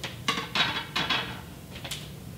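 A few short rustling, scuffing handling noises, the loudest about a quarter, half and one second in, with a sharp tick near the end.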